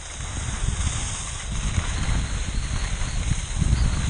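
Skis hissing over snow with wind rumbling on the camera's microphone as a skier heads downhill, getting louder as speed picks up.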